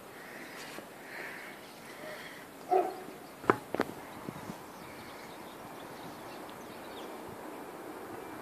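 A camera being handled and set down on a raised perch: light rubbing, then two sharp knocks a little before the middle. Just before the knocks a dog barks once.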